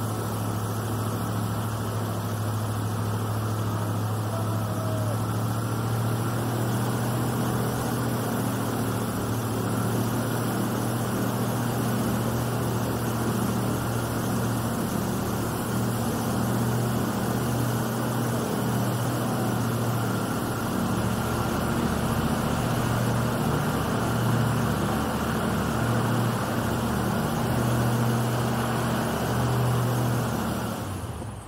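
Airboat's engine and large air propeller running steadily at speed: a loud, even drone with a constant low hum.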